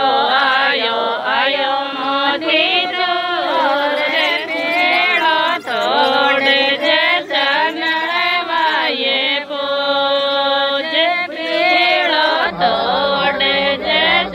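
A voice singing a Rajasthani pujan song (geet) in a chant-like devotional melody, continuous, with a long held note about ten seconds in.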